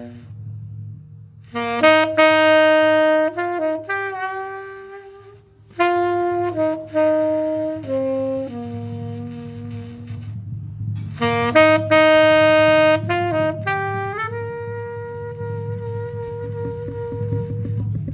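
Tenor saxophone playing a live jazz solo in phrases of long held notes, pausing briefly at the start and about ten seconds in, over an electric bass line.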